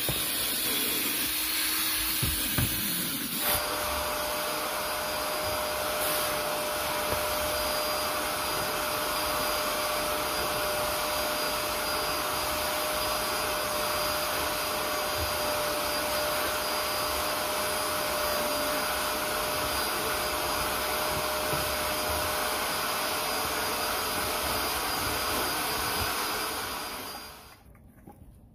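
Vacuum hose and nozzle run over car floor carpet: a steady rushing motor sound with a constant high whine, starting about three seconds in and fading away shortly before the end. The first few seconds hold a different motor sound, a drill-mounted scrub brush on the carpet.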